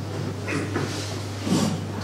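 A few soft knocks and rustles of a hand-held microphone being handled as it is passed along, over a steady low electrical hum.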